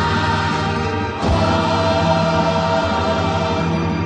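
Gospel-style choir music: voices holding long chords over accompaniment, the chord changing about a second in.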